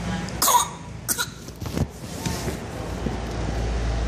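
A baby's short coughs: one loud burst about half a second in, then a few smaller ones. A steady low hum runs underneath, and a low rumble comes in near the end.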